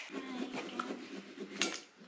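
Small pumpkin-carving tools working into pumpkins: uneven scraping and handling noise, with one sharp click about one and a half seconds in.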